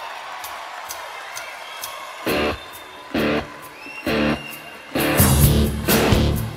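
Live rock band starting a song. A held wash of keyboard and ambient sound comes first, then loud full-band chord hits about once a second from about two seconds in, and the playing grows fuller near the end.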